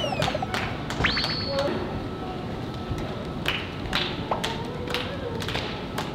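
Irregular taps and thuds of boot steps on a stage floor as a dancer moves about, mixed with voices. A rising whistle-like tone about a second in.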